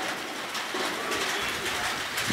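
A dove cooing faintly over a steady outdoor background hiss.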